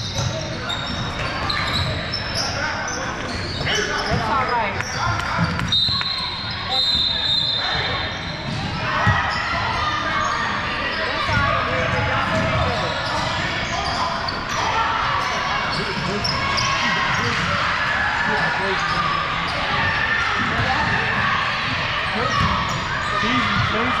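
A basketball bouncing on a hardwood gym floor during play, with indistinct voices of players and spectators carrying in the large hall. Two short high-pitched tones sound, about six seconds in.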